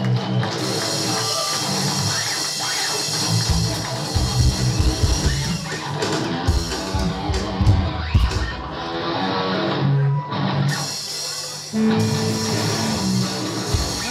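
Live instrumental stoner-doom rock band playing: distorted electric guitar, bass and drum kit. The drums hit hard through the middle, the cymbals drop out for a couple of seconds near the two-thirds mark, then the full band comes back in.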